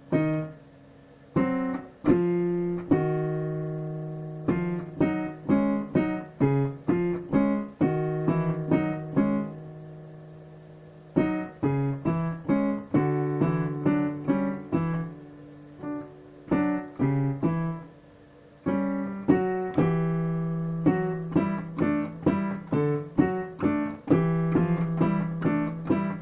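Digital piano played in unhurried phrases of single notes and chords, each note struck and fading, with two short pauses between phrases.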